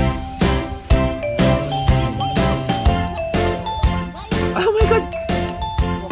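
Background music with a steady beat, about two beats a second, under held melody notes.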